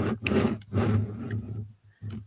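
A paper sheet rustling and being handled close to the microphone as it is held up and moved into place: a rough rustle with a low handling rumble, in a few uneven surges.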